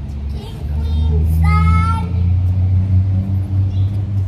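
A steady low engine rumble, like a motor vehicle running close by. About a second and a half in, a child sings or calls out one brief high note.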